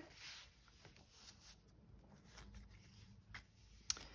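Faint rustle and a few light clicks of paper pages being turned and handled in a handmade junk journal; otherwise near silence.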